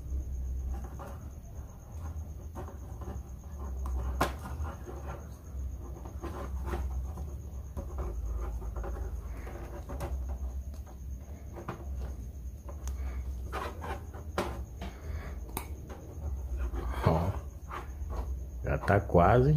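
Small clicks and light rubbing of metal screws and a hard plastic pen handle being turned and fitted by hand, scattered irregularly over a low steady hum.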